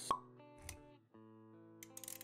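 Intro sting for an animated logo: a sharp pop just after the start over soft music of held notes, then a short low thud. The music dips briefly about a second in and the held notes come back.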